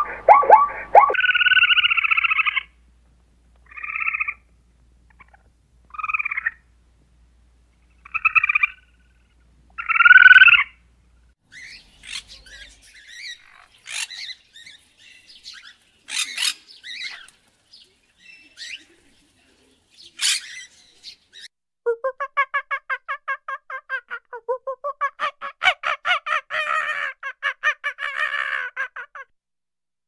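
Zebra calling with repeated loud barking brays for about the first ten seconds, then a scarlet macaw giving scattered harsh squawks. In the last several seconds comes a fast, rattling chatter of about ten pulses a second.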